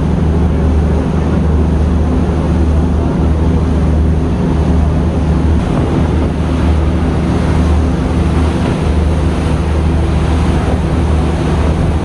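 The launch MV Green Line-2 running through a storm: a steady low engine hum under a continuous rush of wind and churning, breaking water from the wake and waves, with wind buffeting the microphone.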